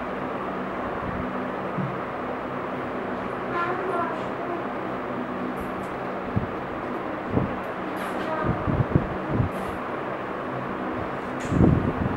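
A steady hum and rushing noise of the room, with faint children's voices now and then and a few soft low thumps in the second half.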